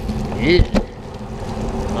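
Bicycle rolling over wet pavement: a steady rushing of tyres on the wet surface and air past the microphone. A short vocal sound comes about half a second in, with a sharp click just after it.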